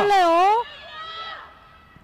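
Sports commentators' voices: a loud, drawn-out excited exclamation that breaks off about half a second in and trails away in a fainter held call over the next second, then only faint background.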